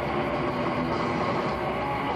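Heavy metal band playing live through a large PA: distorted electric guitar, bass and drums recorded from the audience on a camcorder as a dense, steady wash of sound.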